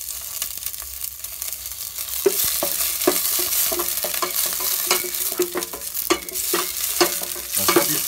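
Chopped garlic and celery sizzling in oil in a stainless steel pot. From about two seconds in, a wooden spatula stirs them, scraping and knocking against the pot many times.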